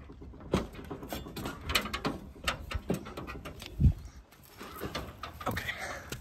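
Footsteps on a concrete S-tile roof: irregular clicks, scuffs and knocks of shoes on the tiles, with one louder, deeper knock a little past the middle.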